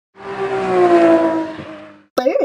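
Car engine sound effect, its pitch sinking slightly and fading away as the wheeled cartoon character rolls to a stop.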